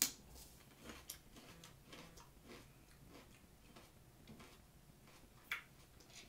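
A bite into a crisp raw green pepper slice coated in maple syrup, then chewing: faint crunches about twice a second, followed by one sharper tick near the end.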